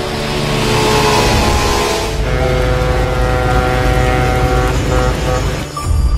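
A speedboat's engine speeding past, a noisy swell with a falling pitch that fades after about two seconds, over film music with steady held chords that carries on through the rest.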